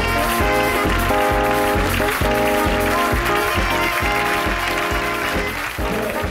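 Closing music with a steady beat under sustained pitched chords, beginning to fade near the end.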